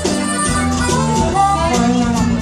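Live acoustic blues-rock band playing: guitar over a steady bass line, with a wavering lead melody on top.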